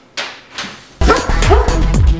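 Boxer dog giving two short barks in a quiet room, then loud electronic music with deep, dropping bass beats cuts in about a second in.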